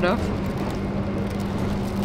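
Steady running noise inside a moving passenger train carriage: a low rumble under a constant low hum, with no distinct knocks or clicks.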